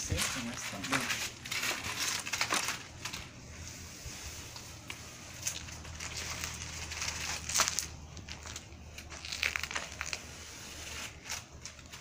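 Masking tape being peeled off painted window trim and crumpled in the hands: irregular crinkling and crackling with a few sharper snaps.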